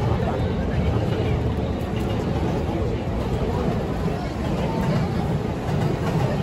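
Busy city-street ambience: many passers-by talking at once over a steady low rumble of urban traffic.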